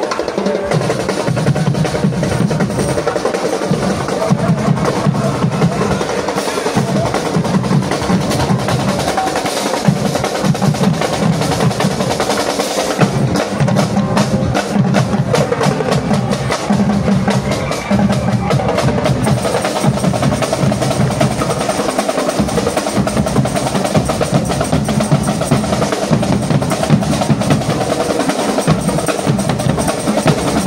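Marching-band percussion section drumming together without a break: snare drums with rolls over multi-tenor drums and deep bass drums.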